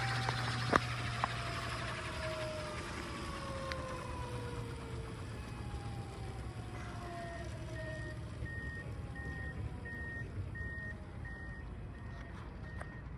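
ALIGN TB70 electric RC helicopter's main and tail rotors and motor spooling down after landing: several whines fall slowly in pitch and fade. From about seven seconds in, a faint high beep repeats evenly, about every two thirds of a second.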